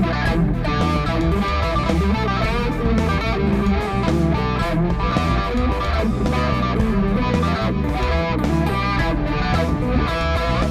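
Electric guitar playing psychedelic funk lead lines through a delay effect, the repeats smearing the notes together.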